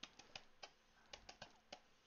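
Faint, irregular clicks and taps of computer input at a digital painting desk, about ten in two seconds.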